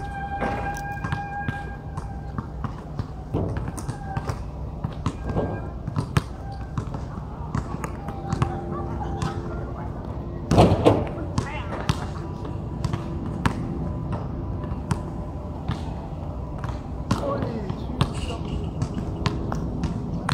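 Basketball thumping on an outdoor hard court and against the hoop as players shoot and rebound: a steady scatter of sharp thuds, the loudest about halfway through.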